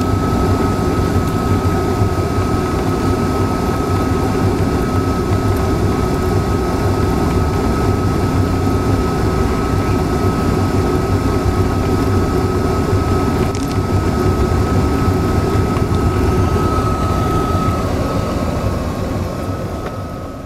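Steady vehicle driving noise heard from a moving vehicle: engine and road rumble, with a thin, steady high-pitched whine over it.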